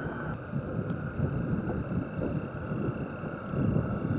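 Honda CG 150 Fan motorcycle's single-cylinder engine running steadily while riding over a dirt road, with wind rumbling on the microphone.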